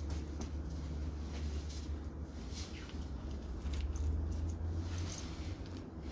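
Low steady rumble of wind on the microphone, with faint rustles of clothing as a body's pockets are searched.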